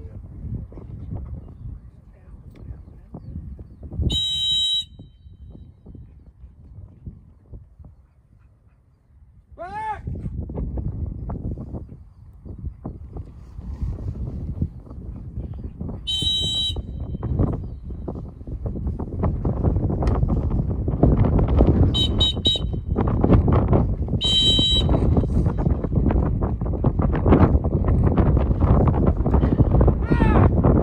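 Dog-training whistle blown in short, shrill blasts to signal a retriever running a land blind: a single blast about 4 s in, another about 16 s in, a quick run of toots around 22 s and one more blast near 24 s. Wind rumbles on the microphone, growing much louder in the second half.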